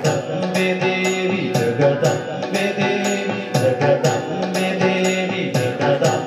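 A man chanting a stotram, a devotional hymn, into a handheld microphone, over a steady beat of about two percussion strokes a second.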